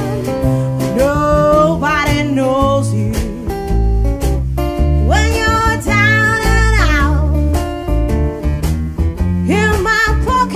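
Acoustic country-blues band playing: strummed acoustic guitar, a plucked double bass stepping through low notes and a light drum beat, with a woman singing over them.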